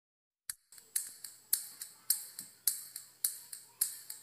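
Rhythmic percussion intro of a karaoke backing track: crisp, high ticks about twice a second with lighter ticks between, starting about half a second in after silence.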